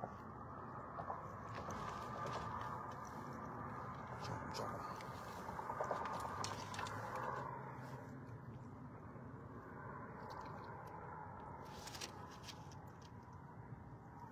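Handling noise as a small catfish is unhooked by hand: rustling with scattered small clicks, a sharper click near the end, over a steady low hiss.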